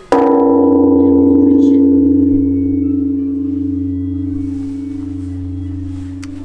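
A large hanging temple bell is struck once by a swung wooden log striker. It gives a sharp hit, then a long ring with a deep hum beneath it, fading slowly.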